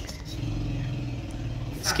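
A motor vehicle engine running at a steady low pitch, starting a moment in and dying away near the end.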